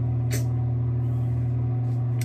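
A steady low hum with even overtones that runs on unchanged, and a brief soft rustle about a third of a second in.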